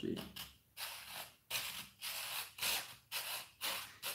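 A fine-toothed Tamiya hobby saw cutting through resin in short back-and-forth strokes, about seven in a steady rhythm. It is sawing the casting block off a resin model-kit part.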